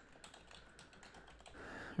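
Quiet, rapid clicking of a computer keyboard as a line of text is typed out.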